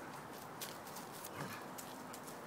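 Dogs' paws scuffling and running through dry fallen leaves on grass: faint, irregular crackling and patter.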